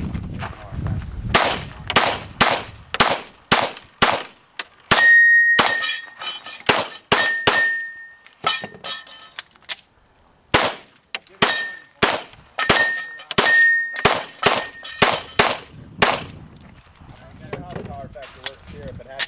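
Glock 34 9mm pistol fired in fast strings, dozens of shots in all, with steel targets ringing when hit. The firing breaks off for about a second and a half near the middle, then resumes.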